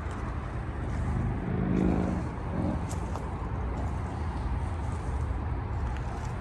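Steady low outdoor rumble of road traffic, with a passing vehicle's engine swelling and fading about two seconds in.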